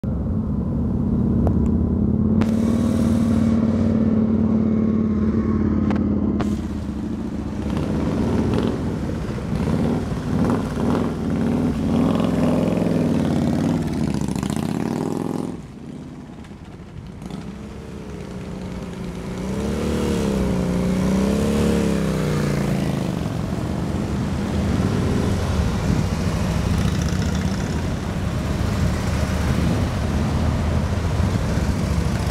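Large touring motorcycles riding at walking pace through a tight cone weave, their engines running at low revs with the pitch wavering up and down as the throttle is worked. The sound drops away for a couple of seconds about halfway through, then picks up again as the next bike comes close.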